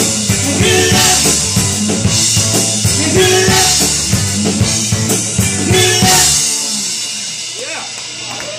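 Live rock band playing: drum kit with cymbal crashes every second or two, electric guitars and bass guitar. About six and a half seconds in the band stops and the last chord rings on and fades, the end of the song.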